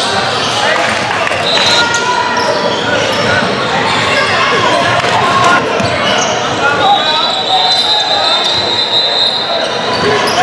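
Live sound of a basketball game in a large echoing gym: a ball bouncing on the hardwood, sneaker squeaks, and players and spectators calling and chatting. A steady high-pitched tone runs through the last few seconds.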